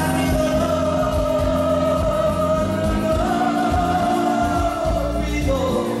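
A man singing karaoke into a handheld microphone over a backing track, holding a long drawn-out note that steps up in pitch about three seconds in.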